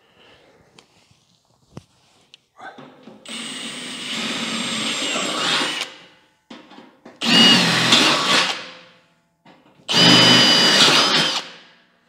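Cordless drill with a 5/16 bit boring three holes, one after another, through the sheet-metal wall of a Rec Teq Bullseye grill bowl, opening up small pilot holes. The first burst runs longest; the second and third come with a high squeal of the bit cutting metal.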